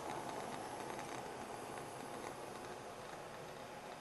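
Faint steady hiss of a gas stove burner heating a steel pot of water that is not yet boiling, with scattered faint ticks.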